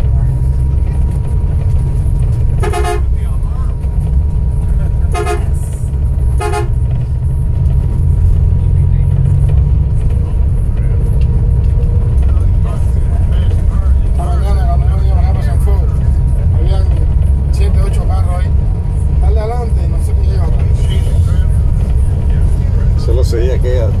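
Car driving on a rough road, heard from inside the cabin: a steady low rumble of engine and tyres, with three short horn toots in the first seven seconds.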